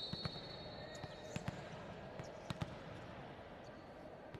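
A volleyball bounced on a hard gym court, with short thumps in pairs about a second apart. A high whistle tone trails off in the first second.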